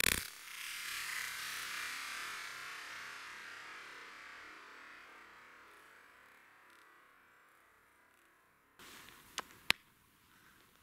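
A single sharp crack of a .22 rimfire rifle shot, followed by a long hiss that fades away over about eight seconds. Near the end come two sharp clicks close together.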